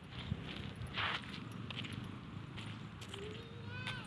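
Footsteps walking on a dirt lane, with soft scuffs and ticks and a stronger scuff about a second in. A faint voice calls near the end.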